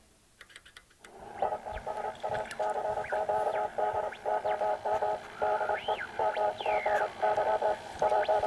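Morse code coming in over a wireless telegraph receiver: rapid on-off beeps of a steady mid-pitched tone over faint radio static, starting about a second in and sent fast. Two short whistling pitch glides cut in near the end.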